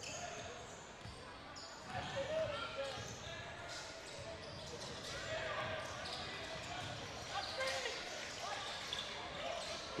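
Faint basketball dribbling on a hardwood court in a large gym, with low murmured voices from players and crowd.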